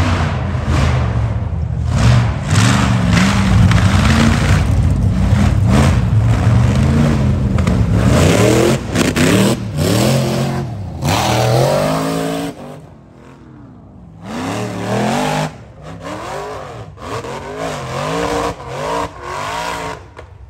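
Rock bouncer buggy engines revving hard in repeated throttle bursts, the pitch climbing and falling with each blip. The sound drops away briefly about two-thirds of the way through, then the revving resumes.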